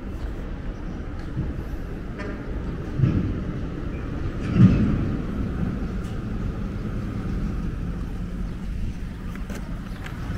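City street traffic: a steady rumble of vehicles, with two brief louder swells, about three seconds in and again about a second and a half later.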